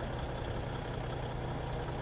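Steady low hum of idling vehicle engines with a faint even road-noise haze.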